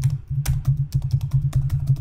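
Computer keyboard being typed on: a quick, steady run of individual keystrokes, about five a second.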